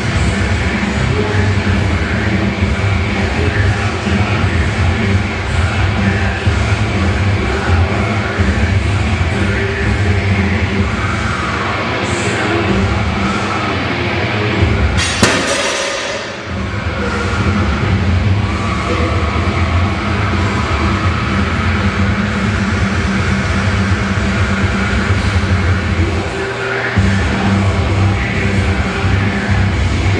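Loud music playing throughout, with a sudden crash about halfway through and a brief drop in level just after it.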